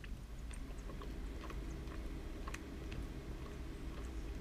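A person chewing a bite of chicken strip with the mouth closed, with a few faint clicks now and then over a low steady room hum.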